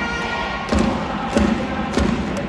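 Baseball cheering section's band and fans: held trumpet notes that stop under a second in, then a steady drum beat with hand claps in time, about one beat every two-thirds of a second.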